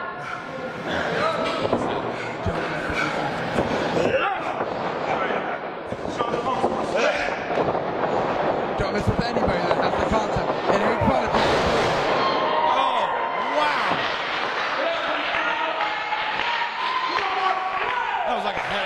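Wrestlers' bodies and feet hitting a padded pro wrestling ring mat: a scattered series of thuds and slams, over people talking and calling out.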